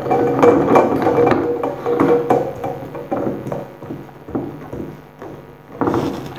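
An LED bulb being screwed by hand into a metal E27 lamp socket: a run of irregular clicks and scrapes from the threads that grow fainter and more spaced out, then stop about five seconds in.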